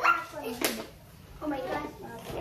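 Voices of women and children talking, with a short sharp sound about half a second in.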